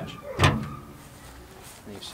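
A single thud about half a second in as a Honda Civic's hood is pushed down and latches shut.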